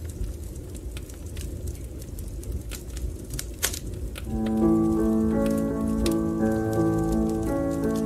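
Fireplace crackle: a low rumble of burning with sparse, sharp pops. About halfway through, slow instrumental music with long held chords comes in and carries on over the crackle.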